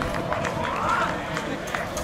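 Distant voices of footballers calling out on the pitch, one rising call about a second in, over steady outdoor background noise.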